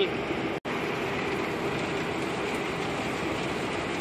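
Steady in-cab running noise of a Scania truck on the move, engine hum under the hiss of tyres on a wet road, broken once by a split-second gap about half a second in.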